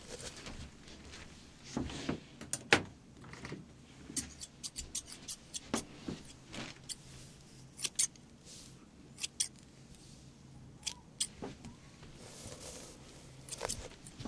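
Hairdressing scissors snipping close to the microphone in irregular single clicks and quick runs of snips, with a soft rustle near the end.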